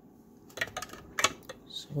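Several light metallic clicks and clinks, the loudest about a second and a quarter in, as a steel ring mandrel holding a stainless steel ring is gripped and lifted from its stand.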